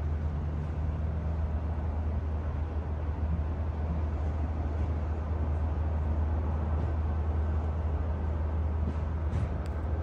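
Steady low hum and whoosh at a Tesla Supercharger V2 while a Tesla Model 3 fast-charges, with a few faint ticks near the end.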